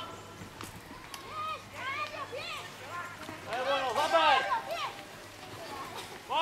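Spectators' voices shouting high-pitched calls, in two bursts about a second in and again around four seconds in, quieter than the close shouts around them.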